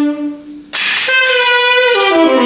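Saxophone playing: a held note tails off, a short pause follows, then a new phrase comes in loudly just under a second in and goes on in long held notes.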